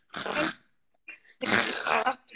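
A woman's voice making two rough, raspy non-speech sounds: a short one at the start and a longer one about one and a half seconds in.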